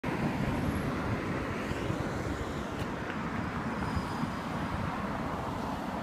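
Steady road traffic noise of a city street, a low rumble, with a faint click about three seconds in.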